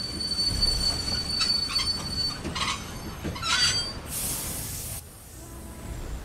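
Train wheels and brakes squealing as the train brakes to a stop: a steady high squeal, then several shorter squeals, then a burst of hiss lasting about a second near the end.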